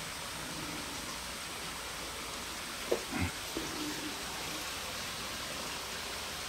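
A steady, even hiss with a few faint short sounds about halfway through.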